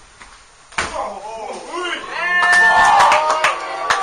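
Sharp slaps of a wrestling strike, with several audience voices shouting over them, loudest about two to three seconds in.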